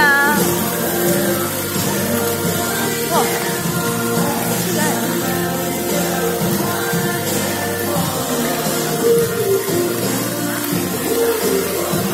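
Music played over a musical fountain's loudspeakers during the show, with the hiss of the fountain's water jets underneath.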